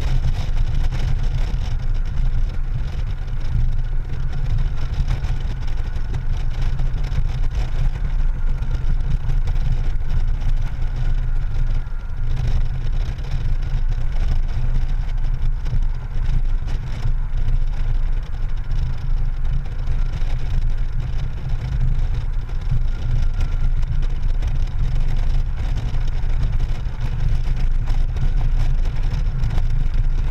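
Honda Gold Wing GL1800 flat-six touring motorcycle cruising at steady highway speed: a constant deep rumble of wind buffeting the handlebar-mounted microphone, mixed with engine and road noise, with no changes in speed.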